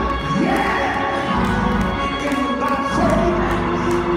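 Gospel church music: held keyboard chords and regular cymbal ticks under a man's voice through the PA, with shouts from the congregation.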